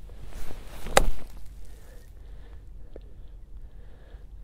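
Golf club striking the ball on a short pitch shot: a short rush of sound builds into one sharp click about a second in.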